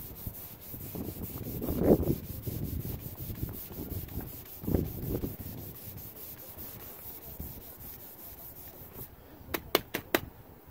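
Hand sanding with a sanding block over guide-coated primer on a Land Rover 109's aluminium body panel: repeated rubbing strokes of abrasive on the panel, blocking it back to show the low spots. The strokes are loudest about two seconds in, with a few sharp clicks just before the end.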